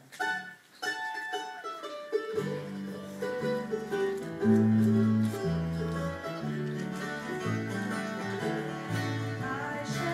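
Bluegrass gospel band playing an instrumental intro on acoustic guitars and mandolin, after a short pause at the start. An electric bass comes in with deep notes about two seconds in, and the music goes on steadily.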